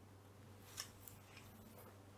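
Faint scratching of a fineliner pen drawing short strokes on paper, with a light click a little under a second in.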